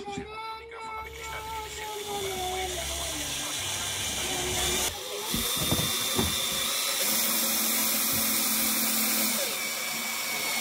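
Cordless drill-driver driving screws into pallet-wood boards. The motor's whine falls slowly in pitch over the first few seconds. Then come a few sharp clicks and knocks, and the motor runs again at a steady pitch for a couple of seconds.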